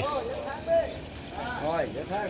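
Background voices of people talking in short phrases, quieter than the narration.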